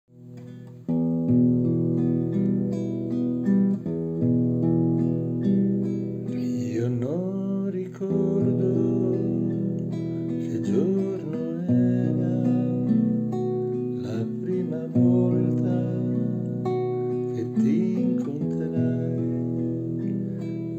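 Classical guitar played in chords as the introduction to a song. The playing starts sharply about a second in, with the chord changing every few seconds.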